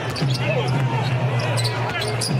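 A basketball dribbled on a hardwood court, with short sharp sounds over a steady low hum of the arena.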